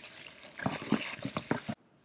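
Bubble wrap being handled and pulled out of a cardboard box, crinkling with a run of sharp crackles; it stops suddenly near the end.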